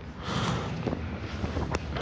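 Clothing rustle and movement noise close on a microphone as a man lowers himself to sit on the floor, with a few light clicks and taps.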